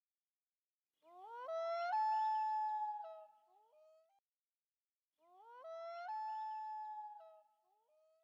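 Common loon wailing twice: each call rises, jumps up to a higher note held for about a second, then drops back down.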